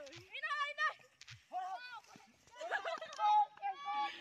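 Children shouting and calling out in high voices: several short calls with brief pauses between them.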